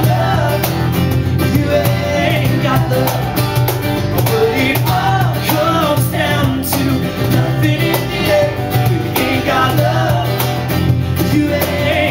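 Live band playing an instrumental stretch of a song: drums keeping a steady beat under bass and guitar, with a wavering lead melody line over them.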